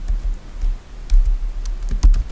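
Typing on a computer keyboard: about five separate keystrokes, each a sharp click with a low thud.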